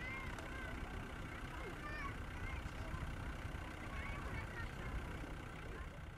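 Large Easter bonfire burning with a steady low rumble, with scattered distant voices of onlookers over it.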